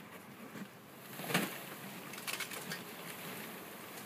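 A swarm of honeybees buzzing, growing louder about a second in as the swarm is disturbed. One sharp knock comes about a second and a half in, followed by a few lighter knocks.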